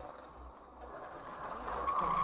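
Faint dashcam recording of a car on the road: low engine and road rumble with a light hiss, growing gradually louder, and a steady higher tone setting in just before the end.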